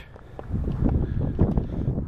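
Wind buffeting the microphone, a gusty low rumble that starts about half a second in.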